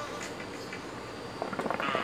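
Hookah water bubbling and gurgling as smoke is drawn through the pipe. It starts about one and a half seconds in as a fast, irregular run of bubbles and grows louder.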